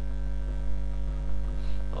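Steady electrical mains hum with a stack of even overtones, running under the recording at a constant level. A short spoken word comes at the very end.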